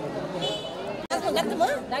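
Speech only: several people talking over one another. The sound cuts off sharply about halfway through, and louder, closer voices follow.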